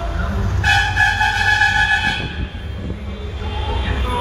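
A vehicle horn sounds one long steady note for about a second and a half, starting just over half a second in, over the low rumble of motorcade traffic: a celebratory honk in a campaign car parade.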